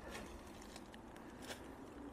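Faint footsteps on forest-floor litter, with a few light crackles, the loudest about a second and a half in.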